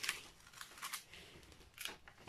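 A few faint clicks and light rustles from handling a diamond painting canvas under its plastic film.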